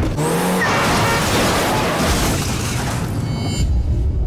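Car being driven hard, engine and tyre noise, mixed with loud film-trailer music.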